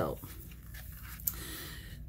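Faint handling noise of a leather holster being turned over in the hands, with a light click about a second in.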